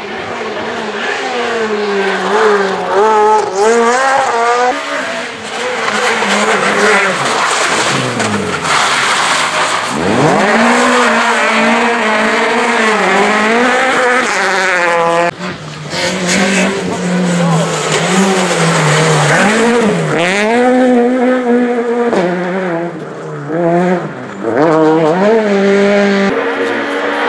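Rally cars passing at speed one after another, their engines revving hard, the pitch climbing and dropping with each gear change and lift, over tyre and gravel noise. There is a sudden break about fifteen seconds in, between one car and the next.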